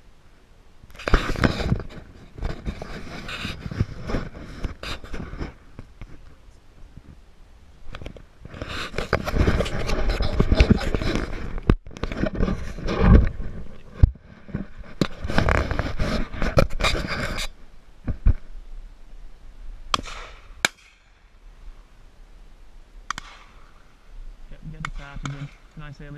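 Loud rustling and buffeting of clothing and wind against a body-worn camera as the wearer walks, in several long stretches. About twenty seconds in there are two sharp clicks, and a man's voice is heard faintly at the very end.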